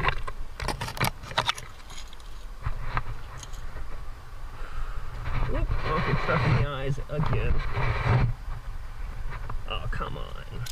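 Metal climbing gear clinking: carabiners and protection knocking together, sharp clicks in the first second or two, over a low rumble. About halfway through, the climber's voice comes in for a few seconds with grunts or muttering, not clear words.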